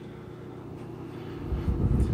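Faint steady hum, then from about one and a half seconds in a low rumble that grows louder.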